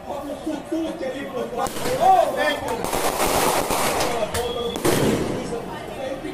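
Voices, with a rapid series of sharp cracks and pops through the middle of the stretch.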